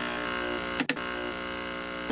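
Steady electronic buzz, one tone with many overtones, broken by a brief click just under a second in.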